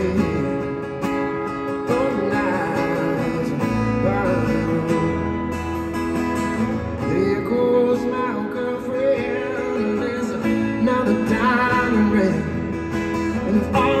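Solo acoustic guitar playing an instrumental passage between sung lines, with held chords and notes that bend in pitch.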